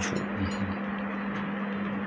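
Pause with no speech: a steady electrical hum, one constant low tone, under a steady hiss of background noise.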